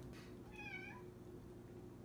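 A house cat meowing once, faintly: a short, wavering call about half a second in.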